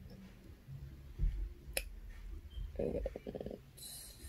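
Quiet room sounds at a computer: a few low thumps, a single sharp click about two seconds in, and a short, low creaky rumble near the end.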